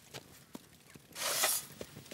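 Cartoon sound effects of shovelling hot coals: a few light knocks, then a little past the middle a short scraping rush as the coals slide off a metal shovel.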